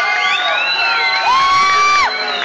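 Audience cheering, with many overlapping high-pitched screams and whoops.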